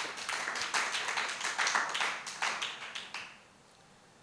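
Applause: a burst of hands clapping in appreciation of a just-recited couplet, dying away a little after three seconds in.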